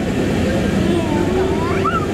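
Steady low machinery noise inside a tourist submarine's passenger cabin, with indistinct voices of other passengers over it.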